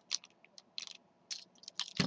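Faint, scattered clicks and creaks of the hard plastic parts of a Transformers Robots in Disguise Railspike action figure being twisted and folded by hand during transformation.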